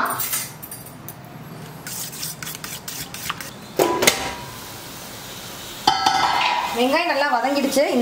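Stainless-steel pressure cooker and lid clattering as they are handled: a series of sharp metal clinks, one ringing briefly about four seconds in. A woman's voice comes in near the end.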